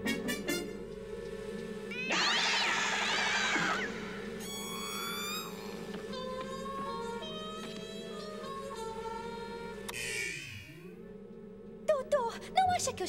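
Cartoon score with a steady low machine hum under it. About two seconds in comes a wavering, cat-like yowl sound effect, followed by short stepped musical notes and a falling sweep near the end.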